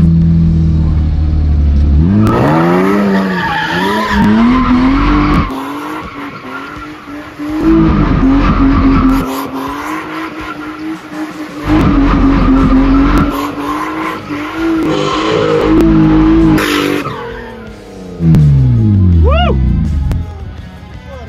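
BMW E36 drift car's engine revved hard while drifting, with tyre squeal. The engine is held high in loud surges that die back and pick up again several times. It rumbles low for the first two seconds, and near the end the revs drop and climb again.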